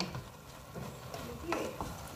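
Wooden spoon stirring and tossing pancit noodles in a large aluminium pot, faint, with a couple of light knocks of the spoon near the end.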